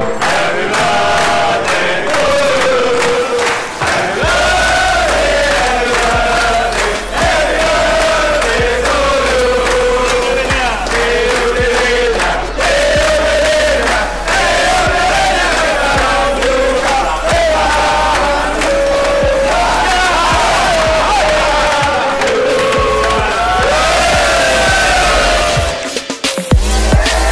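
A group of men singing a birthday song together, with hand clapping along.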